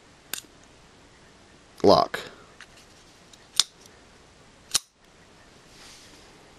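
Kershaw Offset folding knife being worked open and shut in the hand: a few sharp, separate metallic clicks of the blade and lock.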